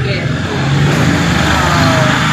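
A motor vehicle passing close by, its engine and road noise swelling to a peak past the middle, with its pitch sliding down as it goes by.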